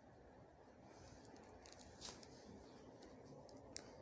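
Near silence: faint room tone with a couple of soft clicks, one about halfway through and one near the end.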